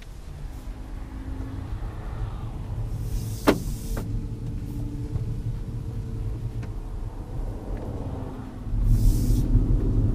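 Cabin sound of a Renault Twingo E-Tech electric car pulling away: a low road and tyre rumble with a faint steady hum. There is a sharp click about three and a half seconds in, and the rumble grows louder near the end as the car picks up speed.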